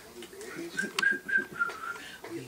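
A few short, high, pure whistled notes, the last ones stepping slightly lower, with a single sharp click about a second in and faint murmuring voices underneath.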